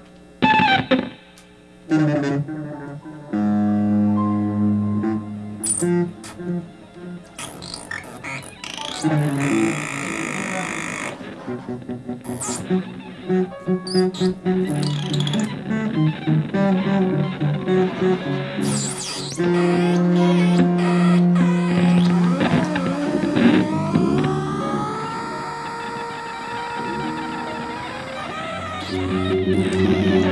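Live band music with electric guitars and bass. It starts with sparse notes and grows fuller, with pitches sliding up and down in the second half.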